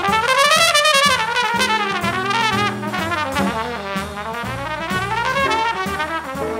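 Trumpet played live in a jazz band, holding long notes with a wide, wavering vibrato that sweep up and down in slow arcs. Upright bass and drums play underneath.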